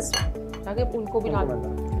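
Metal spoon clinking against a glass serving bowl while food is scooped out, with a sharp clink right at the start and lighter taps after. Background music with a steady beat runs underneath.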